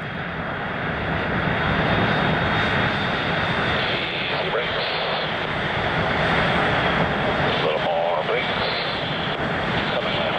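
Twin General Electric F404 jet engines of a Blue Angels F/A-18 Hornet running as the jet taxis along the runway: a steady, loud jet rush that builds over the first two seconds and then holds.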